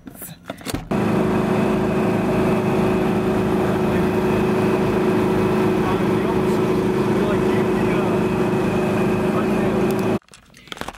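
Food truck's machinery running with a loud, steady hum, starting about a second in.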